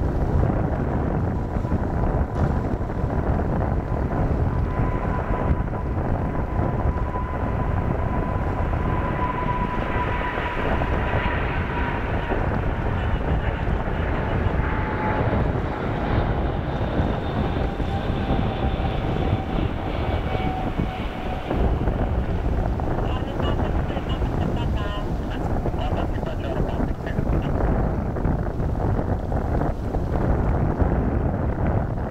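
Boeing 787's Rolls-Royce Trent 1000 turbofans on final approach, a whine that slowly falls in pitch as the airliner draws nearer, over a steady low rumble of wind on the microphone.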